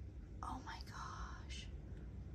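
A woman whispering a few soft, breathy words under her breath, starting about half a second in and stopping shortly before the end.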